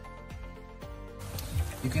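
Background music with a steady beat, then, about a second in, the hiss of pork belly deep-frying in bubbling oil while hot oil is spooned over it.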